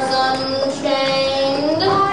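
A chorus of children's voices singing together in long held notes, sliding up to a new note near the end.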